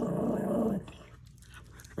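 Small dog giving one low, sustained warning growl lasting about a second, at having its ears handled.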